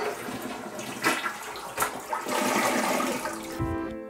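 Toilet flushing, the handle pressed and water rushing through the bowl.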